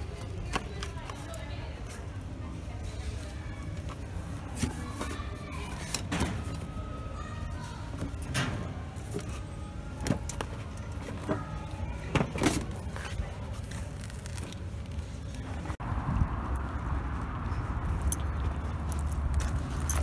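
Shop ambience with background voices and music, and several sharp clicks and clatters of notebooks being handled in a metal display rack. About three-quarters of the way through it cuts to a steadier outdoor rumble of traffic.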